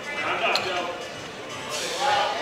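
Indistinct voices calling out in a large hall, the words not clear.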